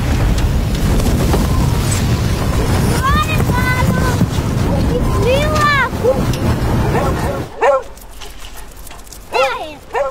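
Loud rushing wind of a flight through the air, with a child's excited shouts over it around the middle. The wind cuts off suddenly about seven and a half seconds in, and voices follow near the end.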